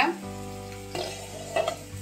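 A mashed fish roe filling frying in oil in an uncovered nonstick pan, sizzling steadily. Two brief louder noises come about a second in and again a little later.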